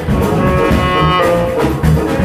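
Live jazz band: a saxophone holds one long note, then moves to another note a little past halfway, over walking electric bass and drum kit.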